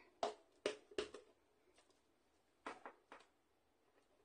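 Clear acrylic stamp block tapped onto an ink pad to ink it. There are a few short, light taps in the first second or so, then another small cluster of taps near three seconds.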